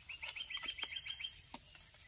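Rose-ringed parakeet chattering: a quick run of about ten short, identical chirps, roughly eight a second, lasting just over a second, with a few sharp clicks in between.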